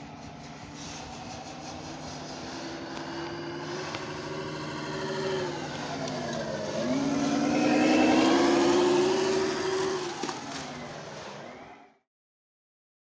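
Simulated diesel semi-truck engine sound from an ESP32-based sound controller, played through the RC truck's speaker as it drives. The engine note climbs, falls back about six seconds in as it shifts up a gear, then climbs again to its loudest before fading and cutting off near the end.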